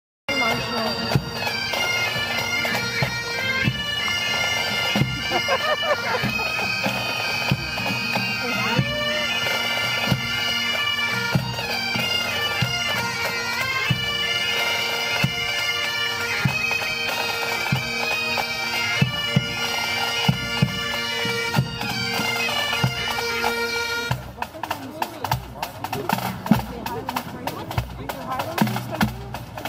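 Marching pipe band: bagpipes play a tune over their steady drone while snare and bass drums keep the beat. Near the end the pipes cut off and the drums carry on alone.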